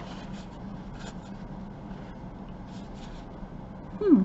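Faint rustling and rubbing of fabric and lace trim as the ruffled lampshade is handled and turned on a cloth-covered table, with a low steady hum underneath.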